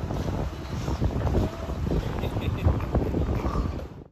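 Wind buffeting the microphone outdoors, a heavy, gusty low rumble that fades out near the end.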